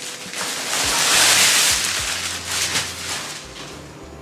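A plastic courier bag rustling and crinkling as a feeding pillow is pulled out of it, loudest about a second in and dying down towards the end.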